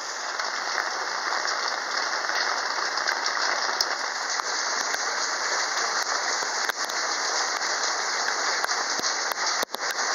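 Steady rain falling, an even hiss with scattered faint drop ticks, dipping briefly near the end.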